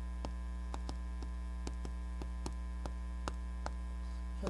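Steady electrical mains hum, with light, irregular clicks and taps of chalk on a chalkboard about twice a second as writing goes on.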